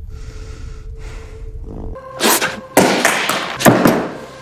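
A low steady rumble, then several loud thuds and crashes coming in quick succession through the second half.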